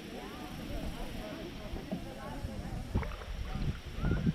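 Indistinct voices of people talking in canoes, with water and paddle sounds from a canoe being paddled, a sharp knock about three seconds in, and wind rumbling on the microphone.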